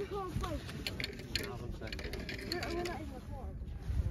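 A quick run of small clicks and rattles about a second in, and a few more later, over voices talking in the background.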